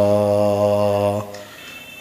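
A man chanting Arabic, holding the final drawn-out vowel of "kathira" as one long steady note that ends a little over a second in.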